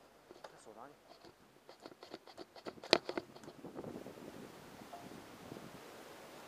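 A short spoken word, then a run of knocks and clicks, the loudest a sharp knock about halfway through, followed by steady rustling noise.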